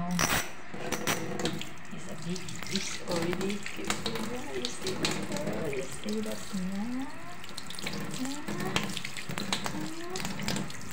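Water from a kitchen tap running into a stainless steel sink and splashing over a hand held under the stream, starting abruptly just after the beginning.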